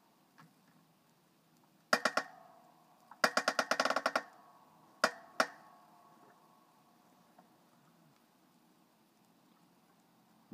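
Hand-pumped hydraulic log splitter forcing its wedge into a big log under load: a sharp crack about two seconds in, then a fast creaking run of clicks for about a second, and two more single cracks a moment later. The log is straining but not yet split.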